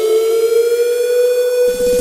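Electronic synthesizer in a devotional song's intro, holding one steady note. A fast, low pulsing beat comes in near the end.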